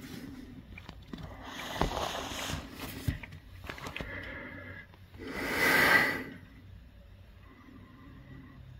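Two breathy rushes of air close to the microphone, like sharp exhales or sniffs: a shorter one about a second and a half in and a louder one a little past the middle, with a few faint clicks between.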